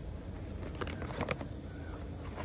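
Cardboard product boxes being handled and shifted on a table: a few short rustles and knocks about a second in, over a steady low background rumble.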